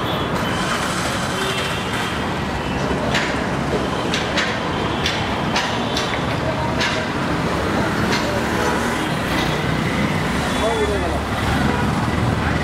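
Road traffic on a busy city street: buses, cars and auto-rickshaws running past in a steady rumble, with people's voices in the background and scattered sharp knocks or clicks.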